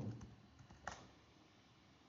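A single computer keyboard keystroke, a sharp click about a second in, against otherwise near silence.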